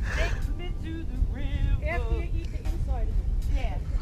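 A person talking faintly at a distance, over a steady low rumble.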